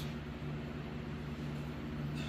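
A steady low machine hum under a faint even hiss.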